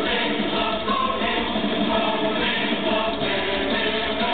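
Symphonic power metal played live over a PA, with choir-like massed singing, heard from within the audience.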